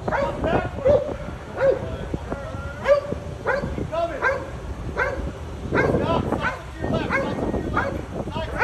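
Police dog barking over and over, short sharp barks about once or twice a second.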